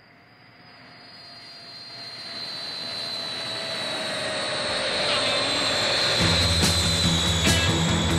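Jet airliner sound effect fading in and growing louder, its engine whine slowly falling in pitch. A rock band's guitar, bass and drums come in about six seconds in.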